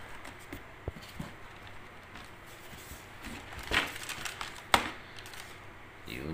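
A cardboard sneaker box being handled and opened: scattered rustling and tapping, with a sharp click or knock about three-quarters of the way through as the lid comes away.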